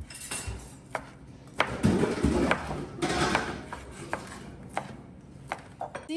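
Chef's knife dicing ham on a plastic cutting board: sharp knocks of the blade on the board, irregular, about one or two a second, with a louder stretch of rustling and scraping in the middle.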